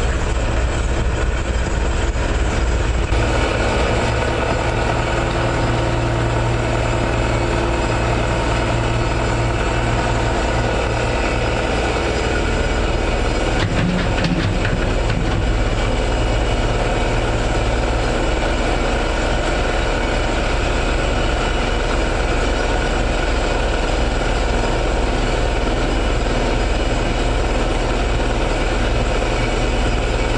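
Heavy diesel construction machinery, such as an excavator, running steadily, with a short clatter of knocks about halfway through.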